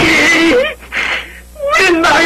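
A woman's loud, strained cries without clear words, in three bursts: one at the start lasting about half a second, a short one about a second in, and another starting near the end.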